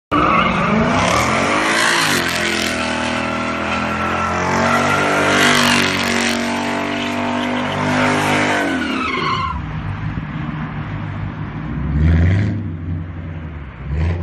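A car engine revving hard while its tyres squeal and skid, as in a burnout or donuts. After about nine and a half seconds the high, gliding revs fall away to a lower rumble, which swells briefly a couple of seconds later.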